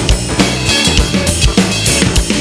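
Electronic drum kit played in a steady funk groove, with kick, snare and cymbal strokes, mixed over a live band recording with bass.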